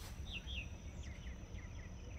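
Birds chirping faintly: a few short, falling high notes, some in pairs, over a low steady outdoor rumble.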